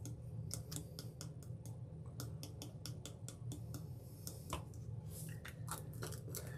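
Small jar of gold glitter tapped and shaken over a plastic cup, a quick run of light clicks, several a second, as the glitter is shaken out.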